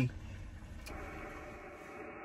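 Steady hiss of band noise from an HF transceiver's speaker in the gap between voice contacts, with faint steady tones in it and a faint click about a second in.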